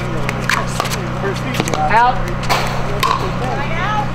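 Pickleball rally: paddles striking a hard plastic ball, several sharp pops about a second apart.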